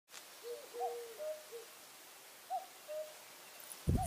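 A bird's short, low-pitched calls over a quiet outdoor background: a cluster of several notes in the first second and a half, then two more between two and a half and three seconds. A man's voice starts just before the end.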